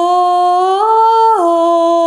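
A woman humming a slow, wordless melody in long held notes. The pitch steps up a little under a second in and drops back about half a second later.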